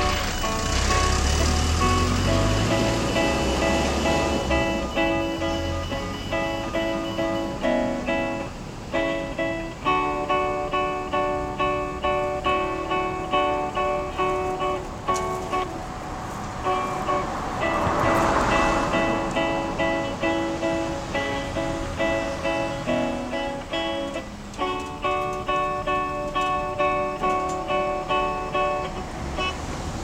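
Solo classical guitar playing a sonata, a steady stream of plucked single notes with brief pauses about a third and four-fifths of the way through. A low rumble lies under the first few seconds, and a swell of rushing noise rises and fades around the middle.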